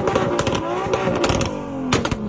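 BMW M2's turbocharged straight-six revved in quick blips while the car stands still, the exhaust crackling and popping sharply between revs. The revs fall away near the end.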